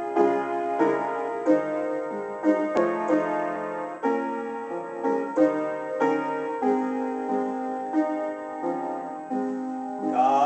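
Solo upright piano played at a moderate pace: full, sustained chords struck in turn, a new one every half second or so, each ringing on into the next.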